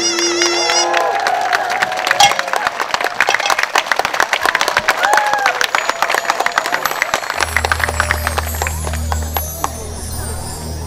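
Audience clapping and cheering just after the last note of a pungmul drum ensemble dies away in the first second. About seven seconds in, a low steady hum comes in under the thinning applause.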